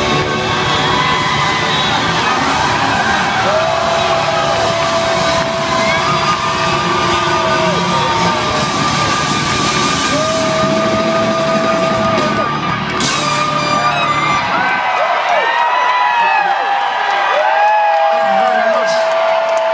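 Live rock band playing at full volume with audience yells over it; about fifteen seconds in the music stops and the crowd cheers and whoops.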